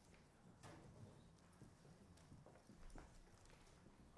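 Near silence with a few faint, scattered knocks and shuffles: footsteps and chairs as people take their seats at the tables on a stage.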